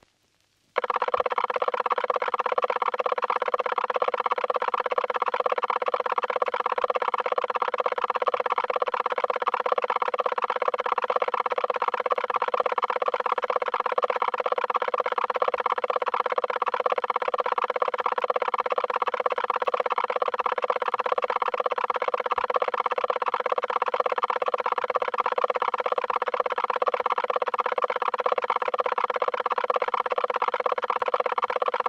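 A loud, steady buzzing drone, pulsing rapidly, that starts abruptly about a second in and holds unchanged throughout.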